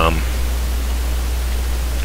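Steady low hum with an even hiss: the background noise of a desktop voice recording between words. The tail of a spoken word sounds at the very start.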